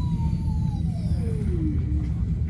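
Stockholm metro train running, heard inside the carriage: a steady low rumble with an electric whine that falls steadily in pitch over about two seconds, as from the traction motors when the train slows.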